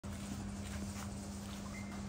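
Gas burner running under a large stockpot: a steady low hum over a low rumble, with a few faint ticks.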